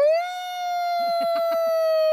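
A person's long, loud held cry of 'Oh!' that sweeps up in pitch at the start, then holds one high note, sagging slightly.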